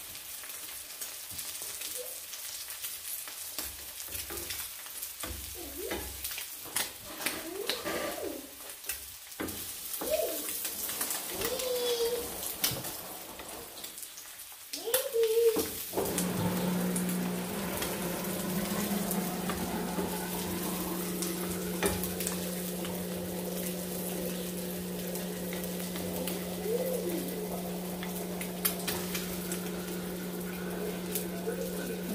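Eggs and sliced meat frying in a nonstick pan, a steady sizzle broken by clicks and scrapes of a wooden spatula. About halfway through, the sound gets louder and a steady low hum comes in.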